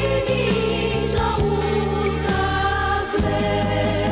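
Gospel song: women's voices singing in harmony over instrumental backing with a bass line and a steady beat.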